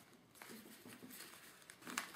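Faint rustling and crinkling of craft ribbon and a cotton handkerchief being handled as the ribbon is tied around a hankie angel's neck, with a sharper rustle near the end.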